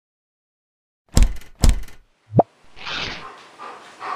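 Two heavy thumps about half a second apart, a short pop just after, then a soft hiss.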